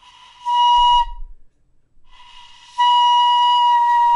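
Shinobue (Japanese bamboo transverse flute) playing the same steady note twice: a short note in the first second, then a long note that starts soft, swells loud and is held to the end.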